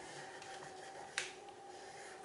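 Faint rubbing of a wax crayon colouring on paper, with one sharp click a little over a second in.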